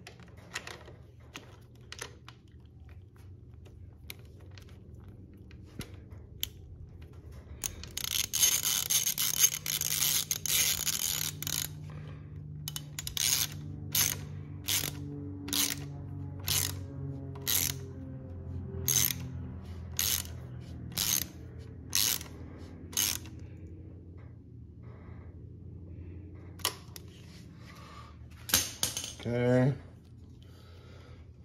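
A hand socket ratchet with an extension being worked on a bolt: a quick run of fast clicking about eight seconds in, then a long series of separate ratcheting strokes, about one every half second, until a few seconds before the end.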